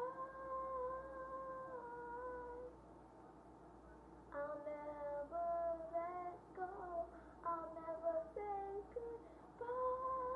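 A girl singing a wordless melody: a long held note, a quieter break of about a second and a half, then a run of short notes moving up and down, and another long held note near the end.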